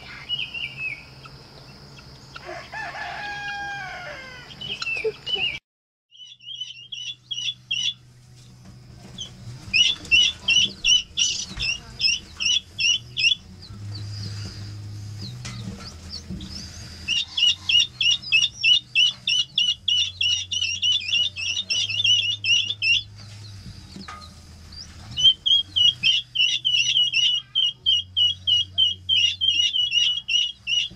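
Baby ring-necked pheasant chicks peeping: dense runs of rapid, shrill cheeps that come in bursts of a few seconds. Before that, in the first few seconds, there are a few scattered bird calls outdoors.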